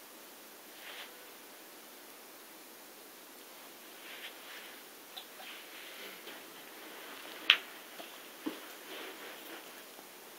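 Faint handling sounds at a table over a steady hiss: light scattered rustles, a sharp click about seven and a half seconds in, and a softer tap a second later.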